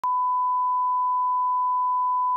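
Steady 1 kHz reference tone, the line-up test tone that goes with colour bars: a single pure pitch held without a break.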